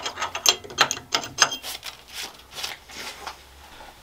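Irregular sharp metallic clicks and clinks of steel tooling being handled and a drill chuck fitted into a milling machine's spindle, thinning out towards the end.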